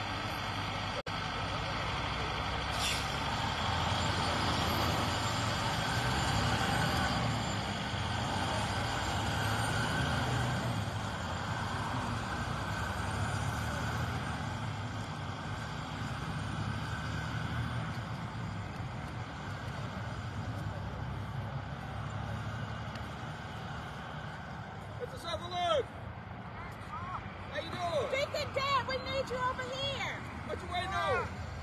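Road traffic going by close at hand, a truck among it, its rumble swelling for several seconds and then slowly easing off.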